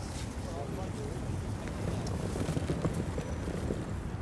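Street ambience: a steady low traffic rumble with faint, indistinct voices of passers-by.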